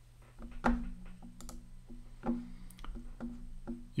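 Quiet background music of plucked guitar notes, played one at a time at an unhurried pace, each note left to ring.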